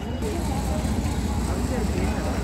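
Steady low engine rumble of a heavy vehicle running, with people talking faintly in the background.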